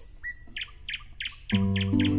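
Small birds chirping: a quick series of short, high chirps. About one and a half seconds in, music enters with sustained low notes, louder than the birds.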